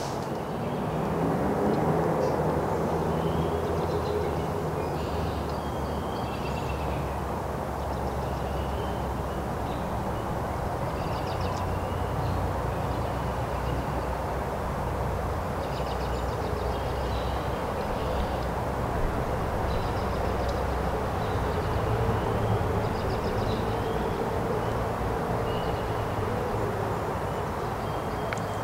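Outdoor woodland ambience: a steady low rumble of distant engine noise, with faint, scattered bird chirps.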